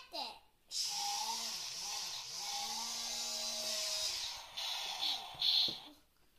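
Small electric motor of a remote-controlled toy CAT forklift whirring steadily for about four seconds, then in two short bursts near the end, with a child's voice vocalizing over it.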